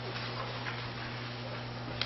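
Quiet room tone of a meeting room: a steady low electrical hum over hiss, with a few faint ticks.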